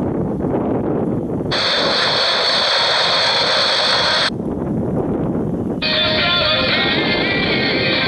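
JGC portable digital world receiver's speaker on medium wave, tuned from 864 to 855 kHz: dull static, then a stretch of bright hiss about 1.5 s in. About 6 s in, a station playing music comes in.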